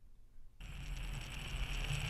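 Chalk scratching steadily across a blackboard, starting about half a second in after a near-silent moment.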